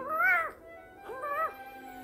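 Newborn kitten mewing twice, short cries that rise and fall in pitch, one at the start and one about a second in. It is protesting at being held and stimulated to toilet. Soft background music runs underneath.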